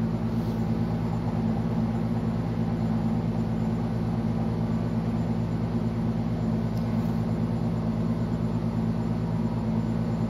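A steady low mechanical hum of a running motor or engine, several deep tones held at an even level without change.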